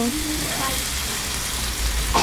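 Marinated chicken breasts sizzling on a hot grill grate as more marinade is basted onto them: a steady, even hiss.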